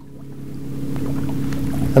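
Steady low hum of a boat's engine running, with wind noise on the microphone that grows louder toward the end.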